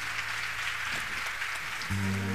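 Audience applause, fairly quiet and even, as a spread of many scattered claps. Right at the end, low sustained orchestral notes come in.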